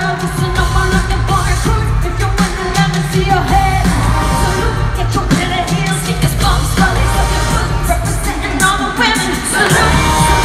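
Live pop music in an arena: female group vocals over a loud backing track with heavy bass, recorded from among the crowd.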